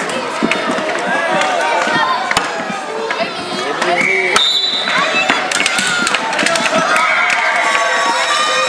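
Children's voices and shouts in a hall with a strong echo, mixed with sharp clicks of plastic hockey sticks and inline-skate wheels on the sports floor.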